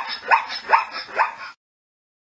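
Zebra calling: a run of short barking calls, about two a second, that stops about a second and a half in.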